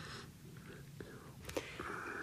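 A pause in the talk: faint studio room tone with two soft mouth clicks, about a second and a second and a half in.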